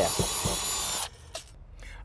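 Drill running with a steady high whine as a small bit bores a test hole through the house wrap into a wall stud. It stops abruptly about a second in.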